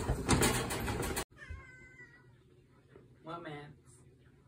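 A cat meows: a faint falling call just after a second in, then a clearer, louder meow near the end. Before that, a burst of loud scuffling noise cuts off suddenly a little over a second in.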